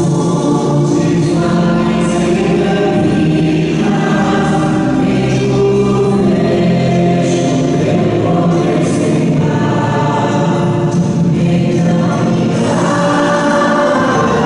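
A hymn sung by a group of voices, in steady sung phrases.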